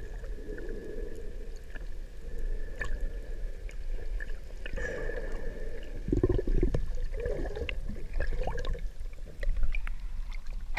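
Underwater ambience heard from below the sea surface: muffled water movement and gurgling with scattered small clicks and a faint steady high tone.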